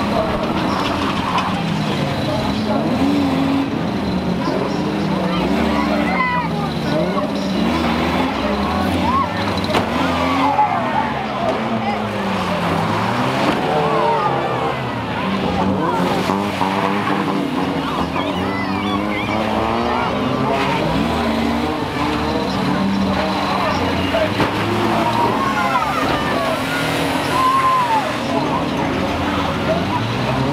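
Engines of several banger-racing vans, Ford Transits among them, running and revving as they race past, their pitches rising and falling throughout.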